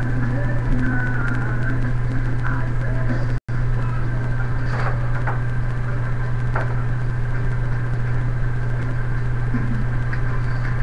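A steady low hum with faint background noise and a few soft clicks. The sound cuts out completely for a moment about a third of the way in.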